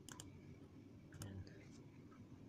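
Faint clicks of a computer's pointing device as a file is picked and opened: a quick double click at the start and another pair about a second in, over quiet room tone.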